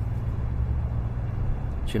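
Steady low rumble of a car in motion, heard from inside the cabin.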